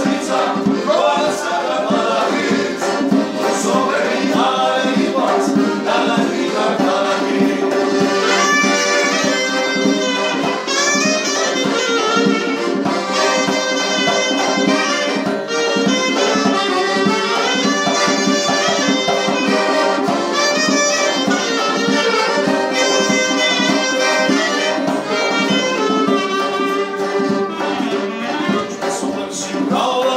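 Small live band playing a Georgian song: clarinet carrying a fast, ornamented melody over accordion and strummed acoustic guitar. A sung line comes before the clarinet takes over about a third of the way in.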